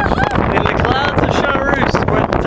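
Strong wind buffeting the microphone, a loud steady rumble and hiss, with a child's high voice calling out over it several times.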